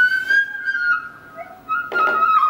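Sogeum, a small Korean transverse bamboo flute, played solo: a long high held note bends slightly and fades out about a second in. After a short soft pause, a new note starts sharply near the end.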